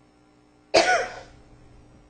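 A single sharp cough just under a second in, sudden and loud, dying away within about half a second.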